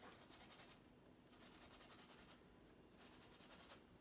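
Faint, rapid scratchy clicking of a pepper grinder being twisted to grind pepper, in two short spells.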